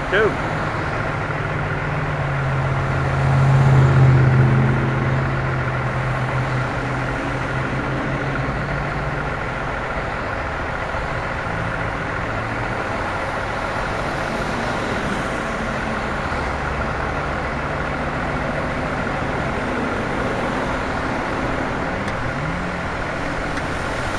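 Heavy vehicle engines idling steadily in stopped highway traffic. A deep engine runs louder for several seconds from about two seconds in, peaking near four seconds, then settles back into the steady hum.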